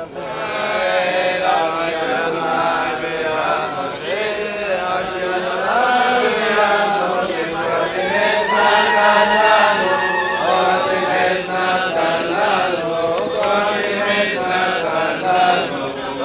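A congregation of men chanting a Hebrew prayer together, many voices in unison, with no pauses.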